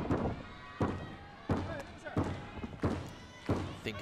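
A run of six evenly spaced thuds, about one every 0.7 seconds, over the murmur of a large arena crowd.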